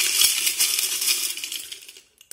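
A handful of small charms and smooth pebbles rattling and clinking together in continuous jostling as they are shaken for a charm-casting reading, dying away near the end.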